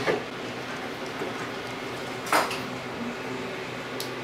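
Faint handling sounds of a threaded set nut being screwed into a laser mirror holder, with one brief scrape or click about two and a half seconds in.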